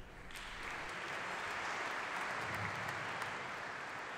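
Audience of seated guests applauding, the clapping starting about a third of a second in and holding steady.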